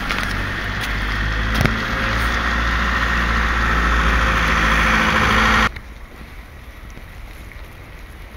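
A motor engine running steadily with a low hum, growing slightly louder, then cut off abruptly a little over five seconds in, leaving a much quieter, even background hiss.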